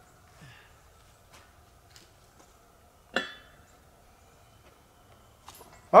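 A single sharp metallic clink with a short ring about three seconds in, over a quiet outdoor background with a few faint knocks.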